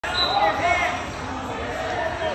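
Voices calling out and talking in a large gymnasium, loudest in the first second, with dull low thuds underneath.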